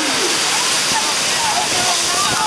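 Loud, steady rush of white water from the rapids and falls around a river raft, with faint voices under it.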